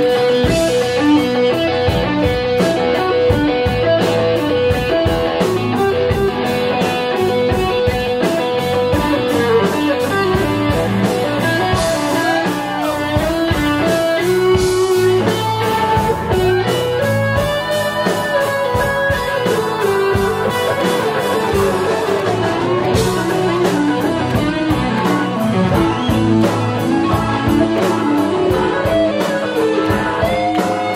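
Live blues band playing, led by an electric guitar solo on a Les Paul-style guitar, full of bent notes, over bass and drums.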